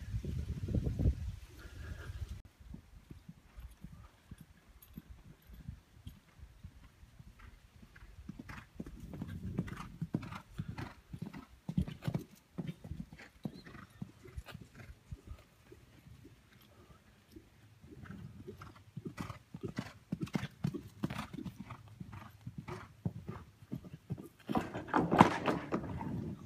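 Hoofbeats of horses cantering on dirt arena footing: irregular dull thuds that grow louder as a horse comes near, loudest near the end.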